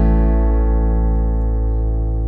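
Background music: a guitar chord ringing on and slowly fading.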